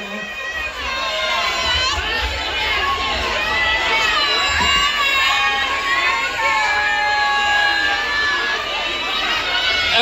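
A crowd of partygoers shouting and cheering, with many voices overlapping continuously.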